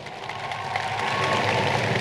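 Large audience applauding, the clapping growing steadily louder.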